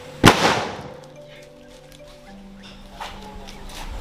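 A bamboo carbide cannon fires once about a quarter of a second in, set off by a torch flame at its touch hole: a single loud boom from the carbide gas igniting, dying away within about a second.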